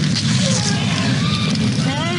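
Film-clip sound effects: a loud, steady low rumble with voice-like cries gliding up and down over it from about half a second in, ending in a rising sweep.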